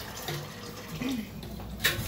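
Cold tap water running steadily into a kitchen sink around a pot of hot milk, with a sharp clink near the end.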